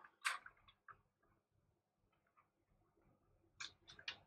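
A few faint plastic clicks and taps as a small cable connector is pushed into the back of an all-in-one water cooler's pump head: one about a third of a second in, a softer one near one second, and two more near the end. The connector does not click home firmly.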